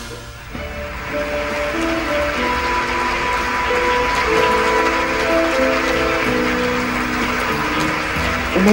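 Music: a slow melody of held notes that step up and down, starting softly after a brief lull.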